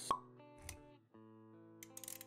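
Sound design of an animated logo intro: a sharp pop just after the start, a soft low thud about half a second later, then a steady held synth chord with a few light clicks near the end.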